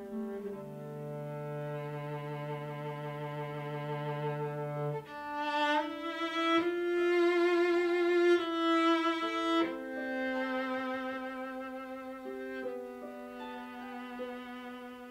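Chamber string ensemble of violins and cellos playing a slow passage of long held chords, the chord changing every few seconds. It swells louder from about six to ten seconds in, then eases back.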